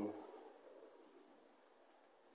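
Model 0-4-0 locomotive and its two coaches running on the track, a faint rumble fading steadily as the train moves away round the layout.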